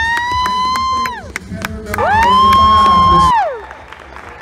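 An audience member cheering with two long, high whoops, each about a second and a half, with hand claps between them. Stage music runs underneath and cuts off near the end.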